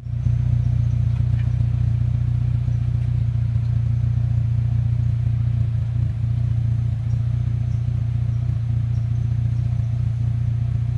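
Renault Scenic engine idling steadily through a newly fitted baffle-less UltraFlow muffler: a low, even drone.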